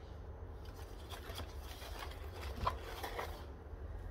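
Small plastic tubestock pots and seedling foliage being handled: faint rustling and light clicks through the middle, with one sharper click a bit under three seconds in, over a low steady rumble.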